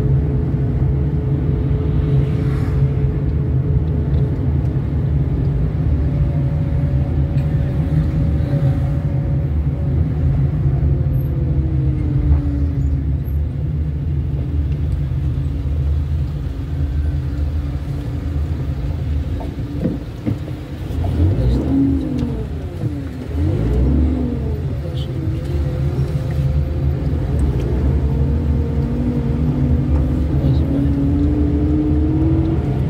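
Car engine and road noise heard from inside the moving car. The engine's pitch rises and falls with speed and gear changes, with a dip and a few quick pitch swoops about two-thirds of the way in as the car slows and pulls away again.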